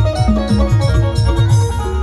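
Live timli band music: an electronic keyboard playing a melody over a fast, steady drum beat.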